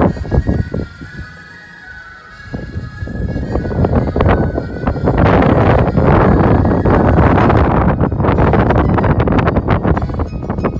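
Wind buffeting the microphone on a moving pontoon boat: a heavy, crackling rumble that swells up about two and a half seconds in and stays loud. Faint music is heard under it in the first couple of seconds.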